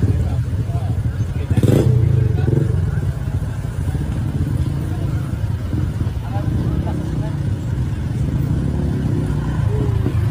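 Several small motorcycle engines running at idle and low speed, a continuous low rumble with a louder surge about two seconds in, with voices over it.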